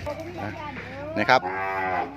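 A red Brahman-type cow mooing. The call rises in pitch early on, then a longer, steady moo is held through the last half-second.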